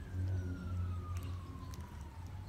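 A faint emergency-vehicle siren wailing, its pitch sliding slowly down, over a louder low steady rumble.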